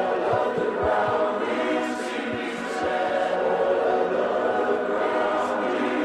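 Contemporary worship band music: sustained, layered wordless singing over held chords, with a few low drum hits in the first three seconds.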